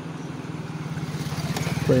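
A motor vehicle running with a low, buzzing, evenly pulsing note that grows steadily louder.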